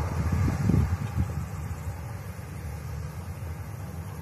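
Wind buffeting the microphone as a low, gusty rumble, strongest in the first second or so, over the distant hum of a Boeing 737 airliner's jet engines as it taxis.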